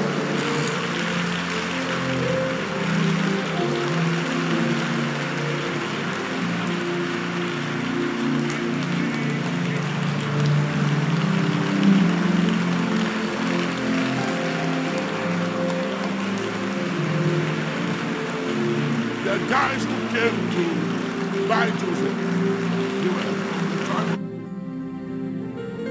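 A large congregation praying aloud all at once, a steady hubbub of many overlapping voices over soft music with held chords. A few single voices rise out of the crowd near the end.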